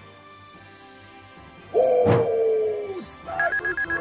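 Edited sound effects over faint background music. Nearly two seconds in, a sudden loud reveal stinger holds a tone that sinks slightly for over a second. Then a rapid string of high ringing beeps starts, a price-counter effect as a card's market price tallies up on screen.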